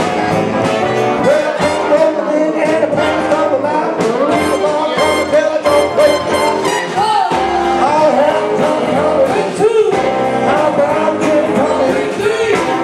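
Live band playing loud with a singer, electric guitar, upright bass and a horn section of saxophones and trumpet, over a steady beat.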